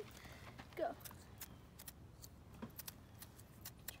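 Outdoor Elements Firebiner's striker scraped against its ferro rod in short, irregular strokes, a series of small metallic scratches and ticks. It is trying to throw sparks into cotton tinder that has not yet caught.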